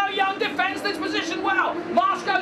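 A man talking fast: race commentary.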